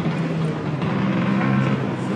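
An engine idling steadily with a low, even drone.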